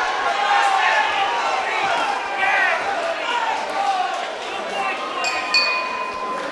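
Boxing crowd shouting and cheering through the closing seconds of the final round, then the ringside bell rings about five seconds in, ending the bout.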